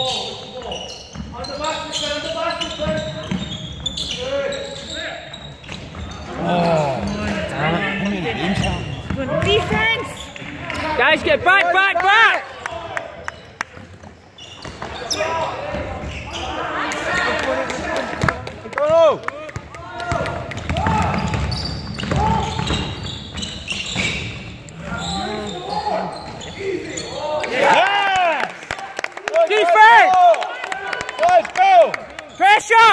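Basketball game on an indoor hardwood court: the ball bouncing, players' shoes squeaking in short rising-and-falling chirps, and voices calling out.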